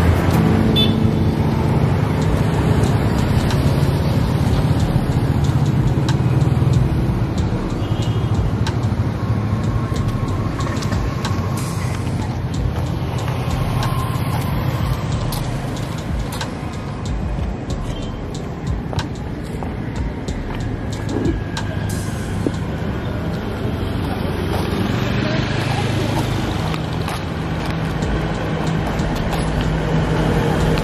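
Town street traffic: cars and motorcycles passing, their engine noise swelling and fading over a steady road hum.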